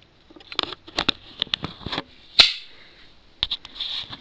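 Handling noise from a camera being picked up and carried: a run of light clicks and rustles, with one louder knock about halfway through.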